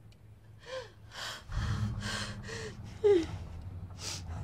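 A woman sobbing: a run of about five gasping, shaky breaths, some breaking into short falling cries. A low steady drone comes in underneath about one and a half seconds in.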